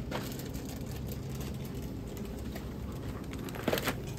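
A loaded wire shopping cart being pushed through a supermarket: a steady rolling noise over a low hum.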